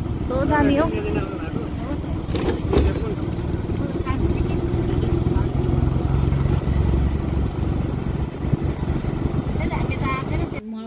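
Steady engine and road rumble of a moving road vehicle, heavier from about halfway through. A person's voice is heard briefly about half a second in.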